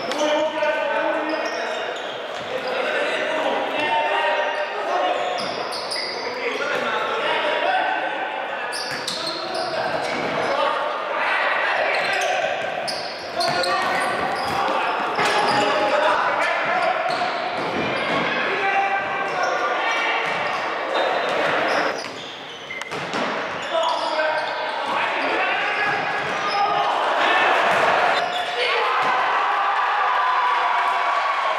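Futsal match sounds: players' and spectators' voices throughout, with the ball being kicked and bouncing on the hall floor in sharp knocks.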